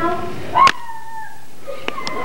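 A high-pitched human vocal cry, about a second long: it rises sharply, then holds a single pitch that slides gently down and fades. It follows a moment of speech.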